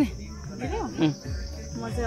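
Steady high-pitched drone of insects, with a brief snatch of a voice about halfway through.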